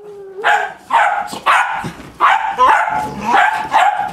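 Cavalier King Charles Spaniels play-barking in a rapid series of short, sharp barks, about two a second, while roughhousing together.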